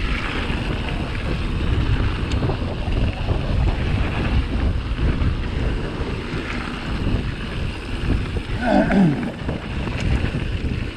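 Wind buffeting the microphone of a helmet-mounted action camera, mixed with the rumble of mountain bike tyres on a rough gravel trail during a fast downhill ride. A brief falling tone sounds about nine seconds in.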